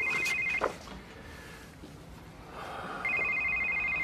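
Mobile phone ringing: a rapidly trilling electronic ring of two high notes, one ring ending about half a second in and the next starting about three seconds in.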